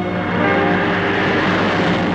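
Rally car engines running hard at speed as the cars race along a stage road.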